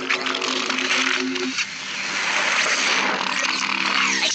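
Cartoon soundtrack played backwards: held low music notes for about the first second and a half, then a loud, steady noise-like sound effect.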